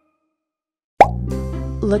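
Silence for about a second, then a single sharp plop, the loudest sound, after which background music starts.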